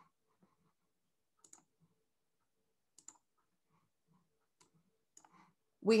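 A handful of faint, short clicks scattered over a few seconds against near silence.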